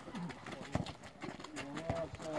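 Two sharp thumps, about a second apart, of a handball bouncing or being caught on an asphalt court, among players' footsteps. Toward the end a player's voice calls out in a long, drawn-out shout.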